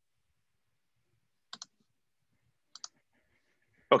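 Two quick double clicks of a computer mouse, a little over a second apart, with silence around them.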